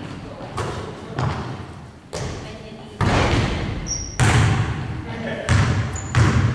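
Basketballs thudding on a hardwood gym floor, about six separate hits at irregular intervals, each echoing in the large hall.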